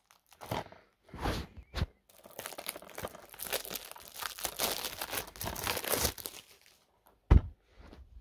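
Packaging crinkling and rustling as it is handled: a few soft knocks first, then about four seconds of dense crackling, and a single sharp thump near the end.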